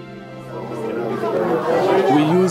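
Soft, sustained background music fades out as a group of people talking over one another rises and grows louder.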